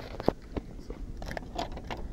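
Aluminium foil crinkling and a plastic-lidded food container being handled, with one sharp click about a quarter second in and a scatter of smaller crackling clicks after it.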